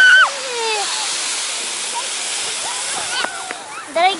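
Inflatable snow tubes sliding fast down packed snow: a steady rushing hiss that thins out near the end. High children's calls ring out over it in the first second and again briefly about three seconds in.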